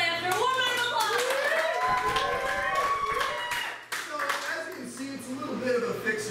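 A small audience clapping, with voices over the applause; the clapping thins out after about four seconds.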